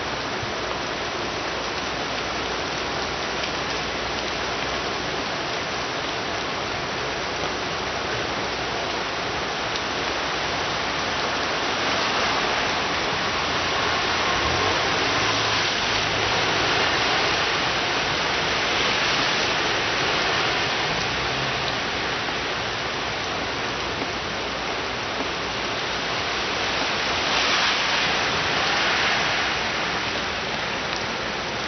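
Heavy rain falling on a city street and pavement, a steady hiss that swells louder twice, once about midway and again near the end.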